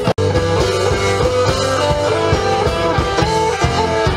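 Live rock band playing, with electric guitar, bass, drum kit and keyboards. The audio drops out completely for an instant just after the start, then the music carries on.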